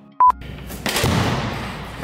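A short high electronic beep, then about a second in a loud boom with a deep rumble that dies away over about a second.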